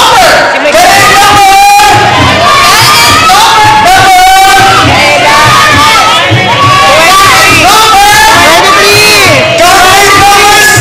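Audience screaming and cheering loudly, many voices shouting over one another without a break.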